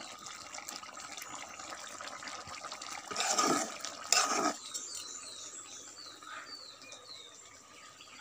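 Curry bubbling in a black iron wok over a wood fire, with two louder sloshing stirs of the wooden spatula a little past the middle.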